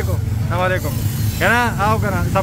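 Auto-rickshaw engine running steadily under the ride, with a voice talking over it.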